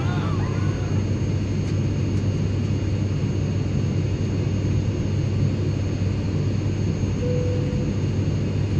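Steady airliner cabin noise: an even, low rumble of engines and airflow heard from inside the passenger cabin. A brief steady tone sounds near the end.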